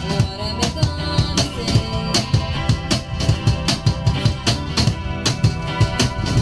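Cajón and acoustic guitar playing an instrumental passage: a steady beat of deep bass strokes and sharper slaps on the cajón under strummed guitar chords.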